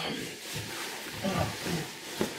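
Bedding rustling as a man throws off a duvet and gets out of bed, with a few short, low grunting groans.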